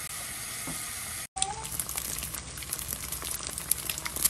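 Eggs frying in a pan: a steady sizzle with sharp crackles and pops that come thicker toward the end. Before it, for about the first second, a steady hiss that breaks off suddenly.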